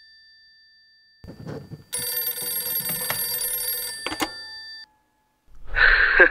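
A bright, bell-like ringing fades out over the first second. A low rumble with a few knocks follows, then a loud, steady bell-like ringing holds for about three seconds and cuts off suddenly.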